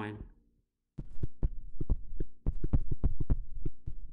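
A quick run of light taps and clicks, about six a second, starting about a second in, over a low steady electrical hum.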